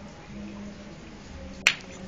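A single sharp click about one and a half seconds in, over a faint steady hum.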